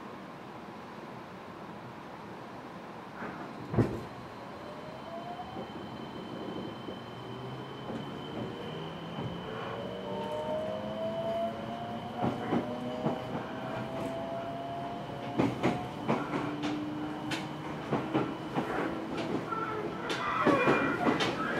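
Fukuoka City Subway 1000N-series electric train pulling away: after a steady standing hum and a single thump about four seconds in, the traction motors whine in several tones that rise slowly in pitch as the train gathers speed. Wheel clicks over rail joints come more and more often in the second half.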